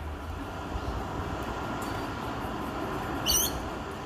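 Steady noise of a road vehicle going by, with a low rumble, and a brief high chirp about three seconds in.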